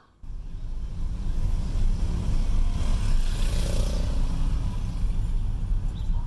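A car heard from inside while it drives along a street: a steady low engine and road rumble, with a rushing noise that swells about three to four seconds in.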